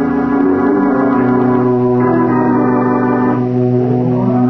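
Organ music bridge of sustained held chords, a low bass note joining about a second in and the upper notes fading out near the end.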